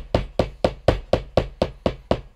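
Rapid, even knocks, about four a second, from the spine of an open Ferrum Forge Stinger titanium button-lock folding knife being whacked down onto a knife mat. This is a spine-whack test of the button lock's strength, and the lock holds.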